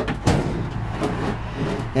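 Handling noise as an old plastic child-carrier bike trailer is shifted by hand: a knock about a quarter second in, then a steady rough scuffing noise, with a low hum underneath.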